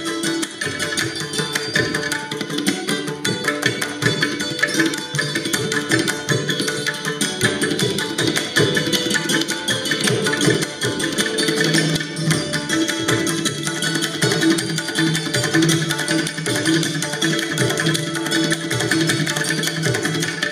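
Santoor played with rapid hammer strokes in Indian classical style, with tabla and other hand percussion accompanying in a steady rhythmic cycle.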